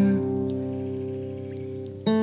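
An acoustic guitar chord ringing on and slowly dying away. A held low note stops shortly after the start.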